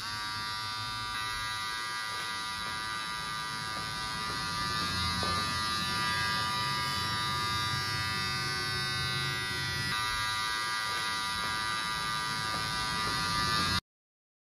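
Electric beard trimmer running: it starts abruptly and holds a steady buzz, then stops suddenly near the end.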